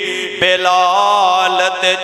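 A man singing a Punjabi naat in a chanted, melismatic style into a microphone; after a brief pause a new line begins about half a second in.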